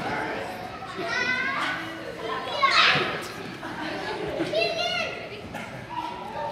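Children's voices chattering and calling out in a large echoing hall, with one louder shout about three seconds in.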